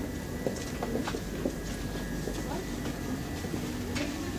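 Supermarket background noise: a steady hum and low rumble with a faint steady high tone, distant voices, and scattered light clicks and knocks.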